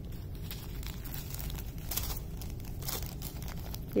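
Small clear plastic bag of diamond-painting drills crinkling as it is handled, with scattered faint crackles.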